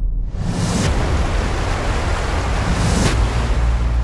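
Trailer sound design: a loud rushing noise over a deep, steady bass drone. It swells briefly near the start and again about three seconds in.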